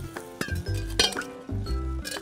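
Metal cooking pots and steel vessels clinking as they are handled and set down, a few sharp knocks with a brief ring, the loudest about a second in. Background music with a steady beat runs underneath.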